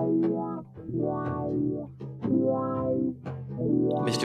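Music: guitar and bass guitar playing held chords in short phrases, each breaking off and starting again about once a second.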